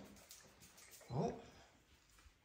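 A short spoken exclamation, "Oh!", about a second in. Otherwise only faint indistinct room sound.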